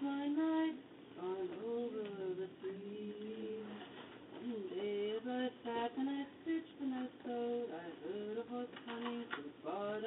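A woman singing a ballad solo and unaccompanied, holding each note in sung phrases with a brief breath between lines.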